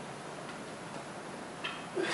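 Faint metallic clicks from the weight plates on a loaded barbell as it is lowered and pressed back up, over steady room noise, with a sharper click about a second and a half in.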